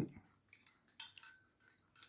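A single faint click, with a faint ringing after it, about a second in, as the lamp's metal base and its flex are handled; otherwise quiet handling noise.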